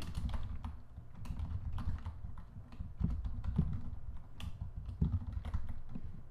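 Typing on a computer keyboard: a run of irregular key clicks as a word is typed out.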